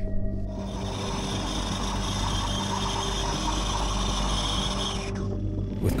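Motorcycle engine that has run out of oil making a harsh, raspy grinding noise, the sound of an engine starved of oil after burning it. It starts about half a second in and cuts off abruptly about five seconds in, over background music.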